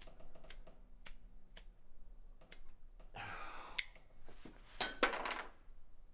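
A cigarette lighter being flicked over and over, a sharp click about every half second. About three seconds in there is a longer rasp, and two louder clicks come about five seconds in.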